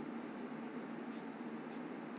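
Black felt-tip marker moving faintly over paper in a few short strokes.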